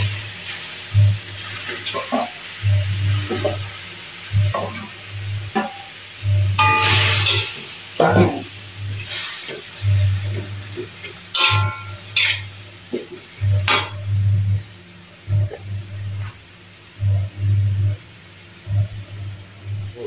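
Metal spatula stirring and scraping boiled vegetables and meat around an aluminium wok in irregular strokes, with light sizzling from the hot oil.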